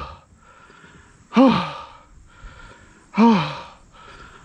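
A man's voice letting out two long wordless 'oh' exclamations, each rising then falling in pitch, about two seconds apart.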